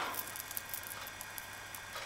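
Faint, scattered small clicks and rustles of handling over a steady low hum and hiss.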